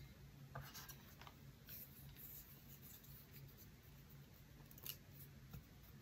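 Faint, intermittent scraping of wooden chopsticks rubbed against each other, a few short scratches over a low steady hum.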